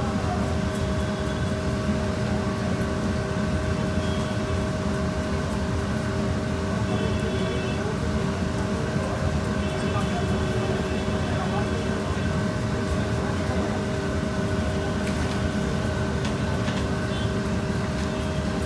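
A steady mechanical hum over a low rumble, holding a few constant tones, with a few light clicks near the end.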